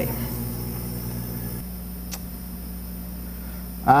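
Steady low hum from a laser engraving machine standing idle after a finished job, with a single faint click about two seconds in.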